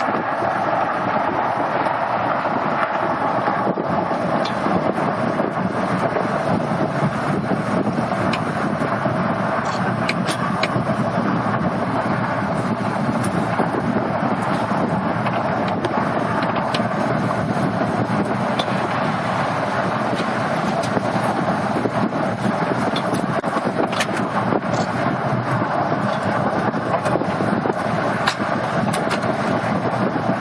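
Steady wind rushing over the microphone, with the road noise of the moving bus and the traffic around it. It is heard from the upper deck of a double-decker bus at speed, loud and unbroken, with a few faint ticks.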